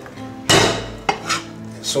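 A kitchen cleaver knocking on a wooden chopping board: one loud strike about half a second in, then a few lighter knocks.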